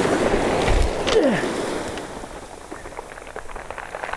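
Surf breaking and washing back over a shingle beach, with wind on the microphone, loudest in the first two seconds and then dying away. A short falling note sounds just over a second in, and small irregular clicks and crunches follow in the second half.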